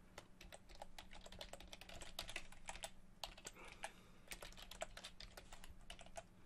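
Computer keyboard being typed on: quick, irregular keystrokes, faint.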